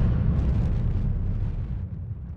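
Low rumble of a deep cinematic boom, fading slowly.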